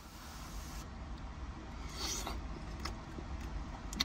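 Faint close-up chewing and mouth sounds of a man eating a mouthful of pasta, with a few soft clicks and a short breathy hiss about two seconds in, over a low steady rumble.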